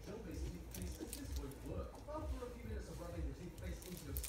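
Low talking voice with scattered faint clicks and crackles from a handheld pineapple corer-slicer being twisted through the fruit.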